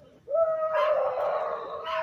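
A dog howling: one long howl held on a steady pitch for about a second and a half.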